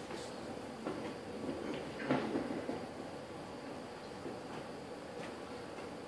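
Microphone stand being shifted and adjusted on a stage: a few faint knocks and handling sounds over low room noise.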